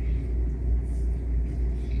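A steady low rumble in a pause between speech.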